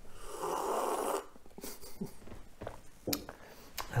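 A person slurping a sip of a drink: a noisy sucking sound lasting about a second, followed by a few small faint clicks.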